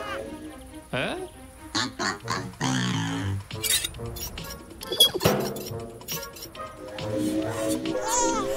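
A cartoon robot's electronic laugh, stepping down in pitch, over background music, with a sharp click and short high ring about five seconds in.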